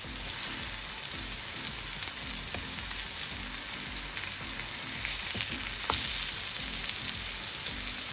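Chicken kebab patties sizzling steadily as they shallow-fry in oil in a nonstick pan while they are turned over with a silicone spatula, with a light tap about six seconds in.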